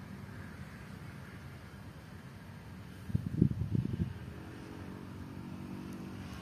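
Low, steady rumbling background noise, with a cluster of louder low thumps about three seconds in and a faint steady hum in the last two seconds.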